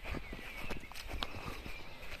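Footsteps through meadow grass: soft, irregular rustles and crunches of stems underfoot.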